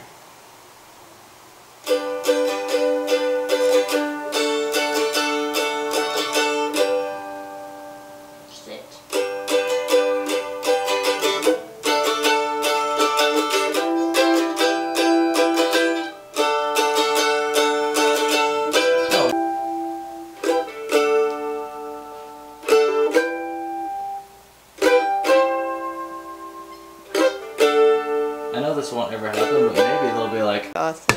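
Mandolin strummed in phrases of rapid chords with short pauses between them, starting about two seconds in.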